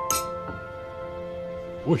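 Soft background music, a rising run of held notes, with a sharp clink just after the start. A short spoken word comes right at the end.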